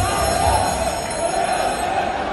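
General crowd noise in an indoor sports arena, with one wavering, held tone over it.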